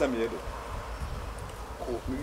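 A short bit of speech just after the start and again near the end, over a steady low background rumble.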